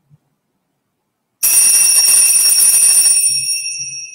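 Hand-held altar bells rung loudly: a sudden burst of shaken ringing about a second and a half in, kept up for nearly two seconds, then left ringing and fading.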